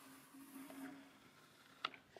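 Near silence: a soft, faint scrape of a wooden popsicle stick drawn along a wet bead of exterior caulk to tool it, over a low room hum, with a small click near the end.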